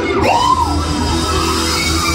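Live rock band playing amplified music in a hall: electric guitar, bass, drums and keyboard, with a short rising-and-falling wail about a quarter second in.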